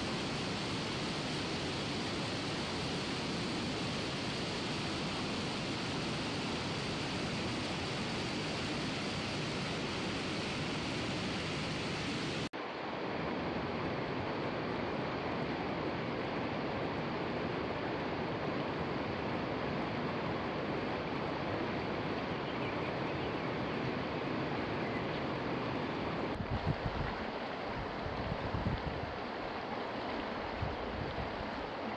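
Steady rush of a shallow, rocky stream running over stones, with a change in the sound about twelve seconds in. A few low rumbles come through near the end.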